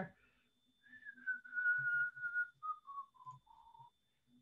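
A man whistling a few notes to himself: one longer held note, then several short notes stepping down in pitch.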